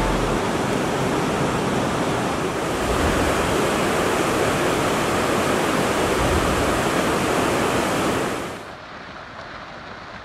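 Steady rushing noise of a swollen, muddy river in flood. About eight and a half seconds in it drops to a quieter, duller hiss.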